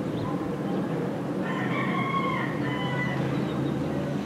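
A rooster crowing once, a call of about two seconds starting about one and a half seconds in, over a steady low hum.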